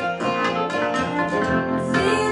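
Acoustic guitar strummed in a steady rhythm together with a Nord Stage 3 stage keyboard playing sustained chords, a live rock duo.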